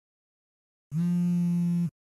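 Mobile phone vibrating on a table for an incoming call: one steady buzz about a second long, starting about a second in, part of a repeating on-off vibrate pattern.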